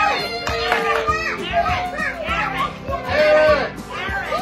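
A group of voices, children's among them, shouting and calling out over one another, with background music underneath.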